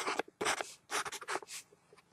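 A marker pen drawing on a paper map: a quick run of short, scratchy strokes and dabs, with a brief pause near the end.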